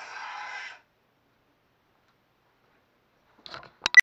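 Crossguard lightsaber running ProffieOS, with its blade retracting: the sound font's retraction sound from the hilt's speaker plays out and stops under a second in. Silence follows, then a couple of knocks and a sharp, loud click near the end.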